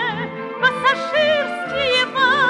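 A 1950s Soviet estrada song played from a 78 rpm record: a woman singing long, vibrato-laden notes over a light orchestra accompaniment.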